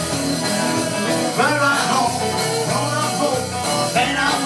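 Live rock and roll band playing, with electric guitars and a man singing lead.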